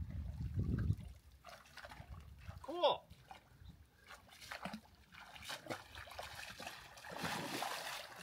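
Water splashing and sloshing as a person wades thigh-deep through a shallow river, dragging a tangle of branches and debris out of the water.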